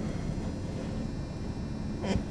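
Steady low hum of a vehicle idling, heard from inside the cabin.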